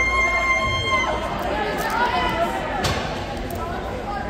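Spectators and players talking and calling out in an ice hockey arena, over the rink's steady low hum. A held tone, like a whistle or buzzer, sounds for about the first second.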